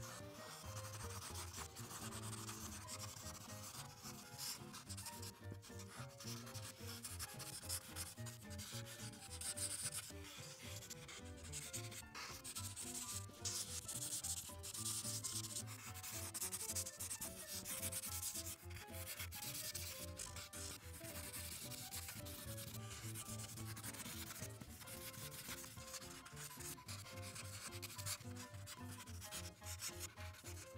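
Ohuhu art marker nib rubbing and scratching across paper in many short, uneven strokes while filling in a large background area.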